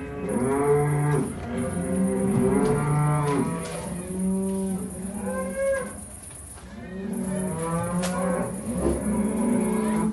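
Cattle mooing: several long, overlapping moos in three groups, the calls bending in pitch.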